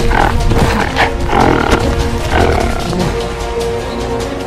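Film music with dubbed animal roars and growls over it, several in a row.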